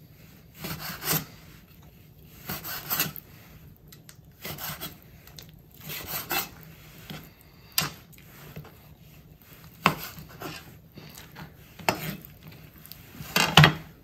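Chef's knife slicing raw heart into thin strips on a wooden cutting board. The strokes are separate and irregular, each a short scrape of the blade through the meat ending on the board, roughly one every second or two.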